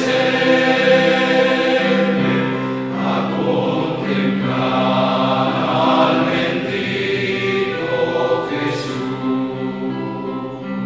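A choir singing a slow sacred hymn in long, held notes.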